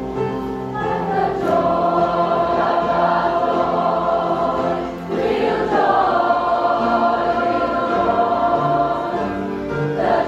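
A large choir singing a gospel worship song over an instrumental accompaniment, the voices coming in about a second in and pausing briefly around the middle before going on.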